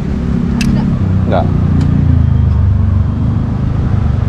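A nearby engine's low hum, swelling through the middle and easing off near the end, with a brief word of speech over it.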